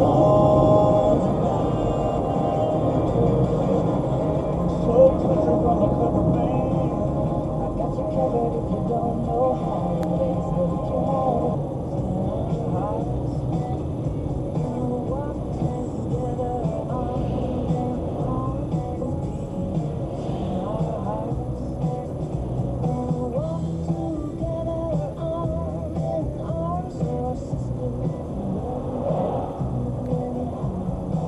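Music playing on the car's audio system, heard inside the cabin of a moving car over a steady low rumble of road and engine noise.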